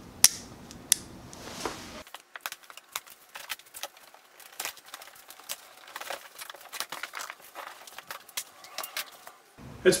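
Two sharp snips of diagonal side cutters, about a quarter-second and a second in, cutting the plastic strapping band on a cardboard box. Then a long run of faint, irregular clicks, taps and rustles as the cardboard box is worked open.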